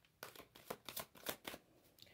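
A tarot deck being shuffled by hand: a quick, irregular run of faint, soft card clicks.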